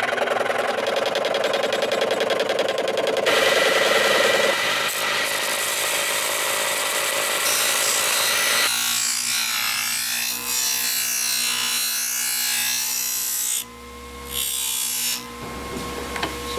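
Skil benchtop scroll saw running and cutting Kydex thermoplastic sheet. About nine seconds in, the sound changes to a different steady machine run, a buffing wheel working the cut Kydex edges, which dips briefly near the end.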